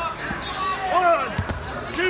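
Several voices shouting over each other from spectators and coaches at a wrestling match, with a couple of dull thumps about one and a half seconds in.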